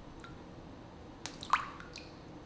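Faint drips and small splashes of water as a hand holds a dead shad at the surface of a fish tank, with two quick plops a little over a second in.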